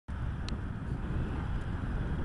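Low, steady outdoor rumble of wind buffeting the camera microphone, with a faint click about half a second in.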